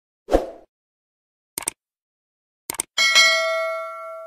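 Subscribe-button animation sound effect: a short thump, then two pairs of quick clicks, then a bell ding of several steady tones that rings on and fades.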